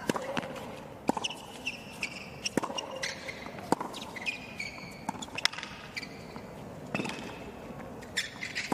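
Tennis rally on a hard court: sharp racket strikes on the ball every second or two, with shoes squeaking on the court between shots.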